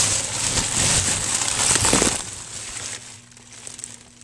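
Clear plastic bag of fuzzy feeder mice crinkling as it is handled close to the microphone. The crinkling is loud for about two seconds, then dies down to a faint rustle.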